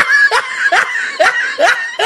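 High-pitched laughter in a run of short, evenly spaced bursts, each rising in pitch, about two to three a second.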